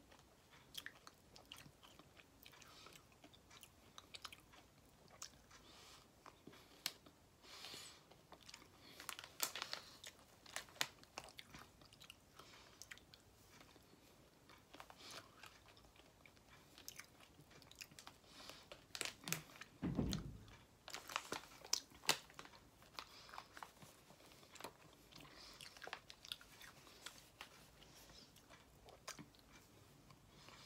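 Faint, intermittent crinkling of a plastic candy bag and small mouth sounds as pieces of cotton candy are pulled off and eaten. One dull low thump, the loudest sound, comes about twenty seconds in.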